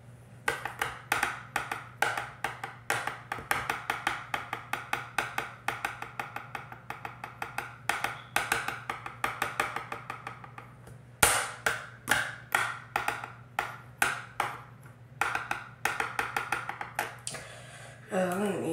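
Plastic pens tapped against a hard surface in quick, uneven drumming strokes, each a sharp click with a short ring. The strokes pause briefly about ten seconds in, then resume with one louder strike.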